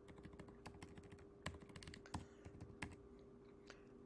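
Faint, irregular keystrokes on a computer keyboard, over a faint steady hum.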